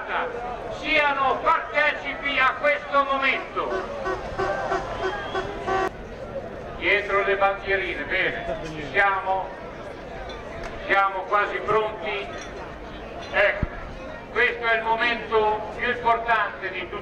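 Speech: people talking, in phrases with short pauses.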